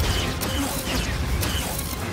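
Action-film sound effects: a dense run of mechanical clicks and creaks over a low rumble.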